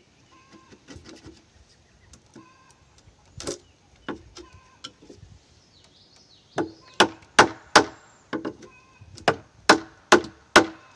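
Wooden mallet striking a wooden-handled chisel cutting joinery into a hewn timber beam. A few quieter knocks come first, then from about six and a half seconds in a steady run of sharp blows, about two to three a second.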